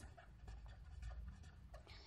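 Faint scratching of a pen writing words on paper, over a low steady hum.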